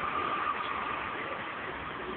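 City street traffic noise, with a steady high whine that fades out about one and a half seconds in.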